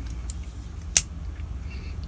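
Ozark Trail folding knife closing: a faint click, then one sharp click about a second in as the blade snaps shut on its freshly oiled ball-bearing pivot.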